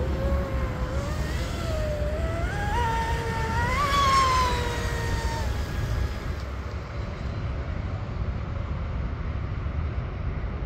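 RC speedboat's brushless electric motor (RocketRC 4092, 1520 kV) driving its propeller at speed, a whine that rises steadily in pitch, peaks about four seconds in, then drops a little and fades away about five seconds in.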